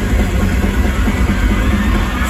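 Live rock band playing loud, with electric guitars, bass and drums, heard from among the audience at an outdoor show.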